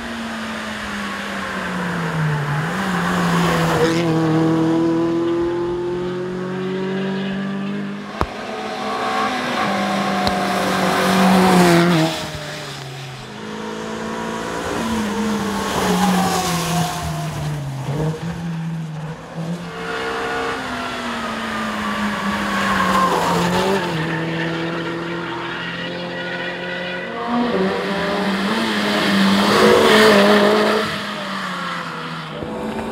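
Renault Twingo R1 rally cars' 1.6-litre four-cylinder engines revving hard as several cars pass in turn. The engine pitch climbs, drops sharply at gear changes and lift-offs, then climbs again, many times over.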